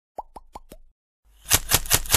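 Logo-animation sound effects: four quick pops in the first second, each a short upward blip. They are followed from about a second and a half in by a dense run of crackling clicks.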